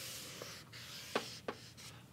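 Thick felt-tip marker drawn across a large paper pad in long strokes, a steady scratchy hiss, followed by a few short clicks.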